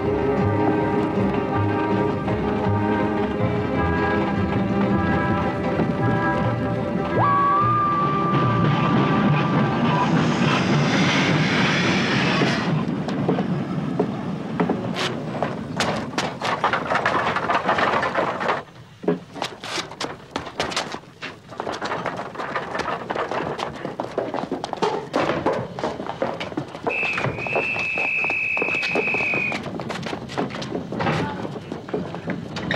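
Dramatic film score music, which gives way about a third of the way in to a short burst of hissing. Then come scattered knocks and thuds, and near the end a steady high whistle held for a couple of seconds.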